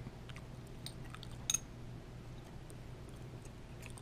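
Faint clicks and light rustle of hands handling a one-ounce silver coin, with one sharper click about one and a half seconds in, over a faint steady hum.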